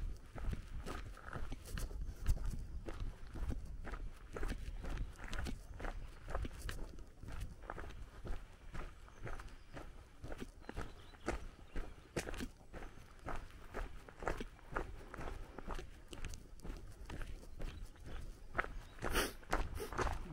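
Footsteps crunching on a gravel road at an even walking pace, about two steps a second.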